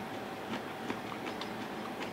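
Faint chewing of menma (seasoned bamboo shoots), a few soft crunchy clicks over a steady room hiss.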